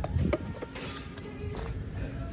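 Hard plastic cases knocking and rattling as they are picked up and handled in a bin. There are a couple of sharp knocks, then a denser clatter around the middle, over faint background music.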